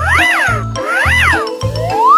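Comedic background music with a steady bass beat, over which two cartoonish cat-meow sound effects each rise and fall in pitch, followed by a rising glide near the end.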